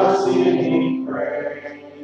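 A church congregation singing a communion hymn together, led by a man's voice: one phrase begins loudly at the start, a second follows about a second in, and the singing fades near the end.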